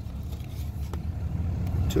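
Low, steady rumble of a Ram 2500 pickup's engine idling, heard inside the cab, with a faint click about a second in.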